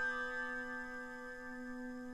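Instrumental anime score music in a quiet, slow passage: several held notes ring and slowly fade over a steady low sustained tone, with no new notes struck.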